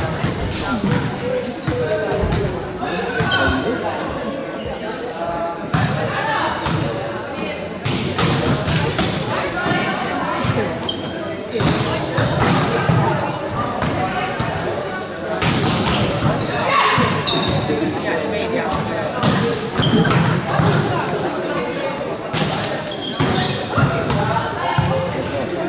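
Indoor volleyball in a large sports hall: irregular sharp thuds of a volleyball being bounced and struck, under the players' and onlookers' voices calling and talking.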